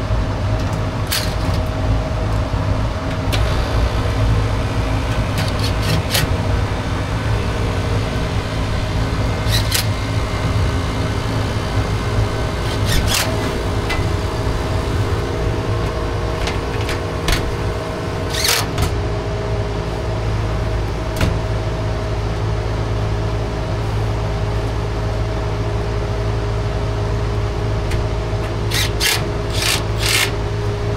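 Trane 8.5-ton package heat pump running with a steady hum, several lasting tones over it. Scattered short knocks, scrapes and clicks come from its sheet-metal access panel being fitted back on and fastened, the loudest about two-thirds of the way through and near the end.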